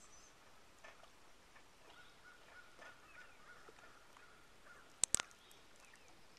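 Faint outdoor ambience with a bird calling a quick run of short, repeated notes. Near the end come two sharp clicks close together, the loudest sounds.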